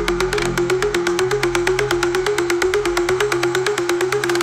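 Dark electronic techno track: a rapid, even hi-hat pattern ticks over a synth riff that steps back and forth between two close notes, with a sustained low bass underneath.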